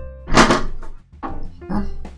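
A Power Mac G5's clear plastic air-deflector cover being pulled out: a loud plastic knock about half a second in, then quieter handling knocks, over steady background music.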